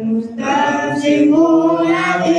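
A man chanting in a melodic voice with long held notes. There is a brief break for breath just after the start, then a new phrase that steps up in pitch partway through.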